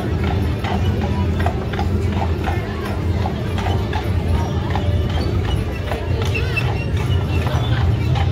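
Draft horse walking on brick pavement, its hooves clip-clopping in a steady walking rhythm of about two to three hoofbeats a second.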